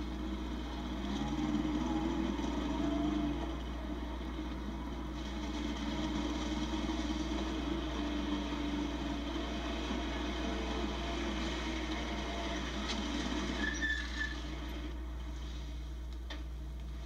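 Kawasaki police motorcycle engines running as the riders pull away and ride off down the street, the engine note rising and falling. Heard through a television's speaker, with a steady low hum underneath.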